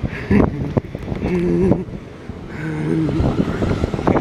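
Siemens Desiro Class 450 electric multiple unit moving through the platform: a steady rumble of wheels and running gear close to the microphone.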